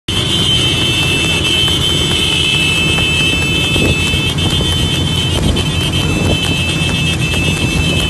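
Small motorcycle engines running at speed alongside a racing horse cart, a steady rumble overlaid with a continuous high-pitched tone.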